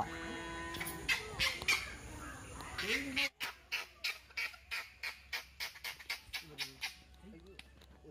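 Dry kindling crackling as it is lit in a brick stove: a quick run of sharp snaps, about four a second, that fades after a few seconds. Before it, a mix of faint background sounds.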